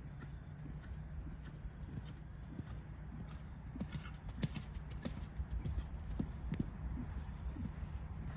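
Hoofbeats of a bay Canadian Sport Horse gelding cantering on sand arena footing: uneven thuds and clicks over a steady low rumble, loudest past the middle as the horse goes by close.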